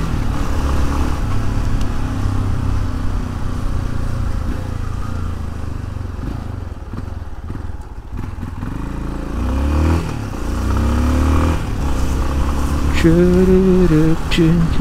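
Motorcycle engine running under way, easing off and quieter around the middle, then picking up again with rising engine pitch about ten seconds in.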